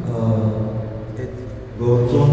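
Speech only: a man talking slowly, drawing out his syllables.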